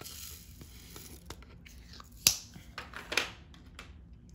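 Plastic crinkling and rustling as diamond painting supplies are handled, with a sharp click a little over two seconds in and another burst of rustling just after three seconds.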